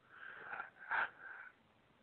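A man's faint breath drawn in between sentences, a soft airy sound lasting about a second with a brief stronger moment halfway through.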